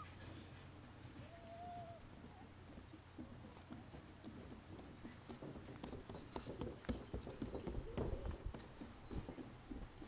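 Footsteps knocking on the wooden plank deck of a suspension footbridge. They are faint at first, then more frequent and louder in the second half.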